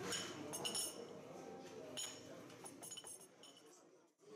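Crockery clinking as coffee cups, saucers and spoons are set out on trays: a handful of light chinks with a short ring, fading out near the end.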